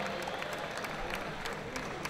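Scattered, fairly quiet audience clapping: many separate claps over a low crowd hubbub.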